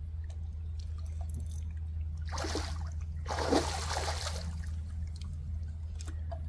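Water splashing twice, a short splash about two seconds in and a longer, louder one just after three seconds, over a steady low rumble.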